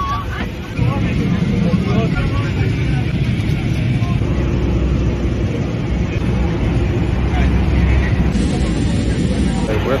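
Airliner cabin noise in heavy turbulence: a loud, steady low rumble of engines and airflow through the fuselage.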